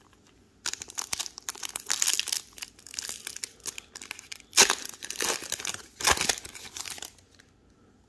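Foil wrapper of a trading card pack being crinkled and torn open by hand: a dense crackling that starts about a second in and stops shortly before the end, with two sharper, louder rips partway through.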